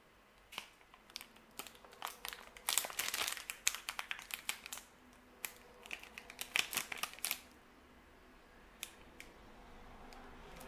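Plastic wrapper of a protein bar crinkling and crackling as it is torn open and handled. It makes a run of sharp crackles that is busiest a few seconds in and stops about seven seconds in.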